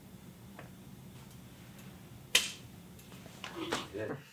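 One sharp click a little over two seconds in, over a faint steady room hum, with a short, weak sound near the end.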